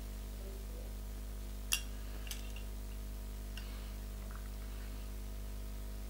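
Steady low electrical hum, with one sharp, light click a little under two seconds in and two fainter ticks later, from small fly-tying tools such as hackle pliers being handled at the vice.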